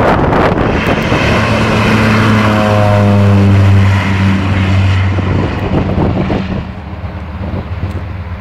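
Ayres Turbo Thrush's turboprop engine and propeller at take-off power as the plane runs down the airstrip and passes close by. The drone is loudest and drops in pitch as it goes past about four seconds in, then fades as it moves away.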